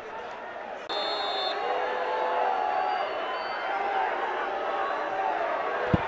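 Referee's whistle blown once, briefly, about a second in, then football stadium crowd noise with voices carrying on. A single sharp thump near the end, a ball being struck for a penalty kick.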